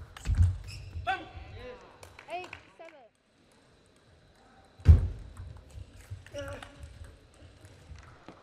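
Table tennis play: sharp knocks of the ball on bats and table with a heavy thump about half a second in, then a player's shout. After a short break, a single loud thump comes about five seconds in, as the next point starts, followed by a few more ball knocks and voices.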